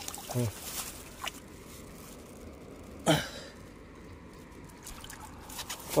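Shallow stream water trickling steadily, with one brief sharp noise about three seconds in.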